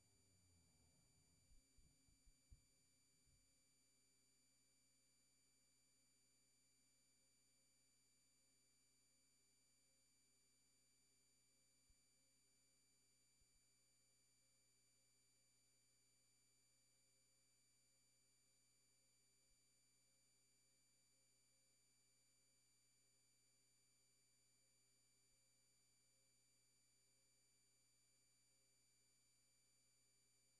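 Near silence, with only a faint steady hum and a few soft clicks in the first few seconds.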